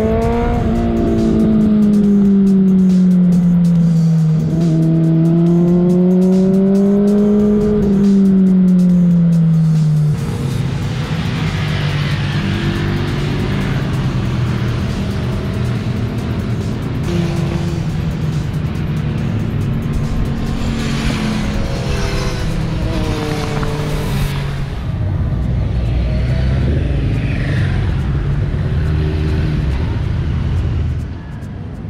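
A Honda CBR600RR sport bike's inline-four engine at speed on track, its note rising and falling in pitch in repeated waves as the rider accelerates and backs off. About ten seconds in, this gives way to a rougher, steadier drone of several motorcycles going round the circuit.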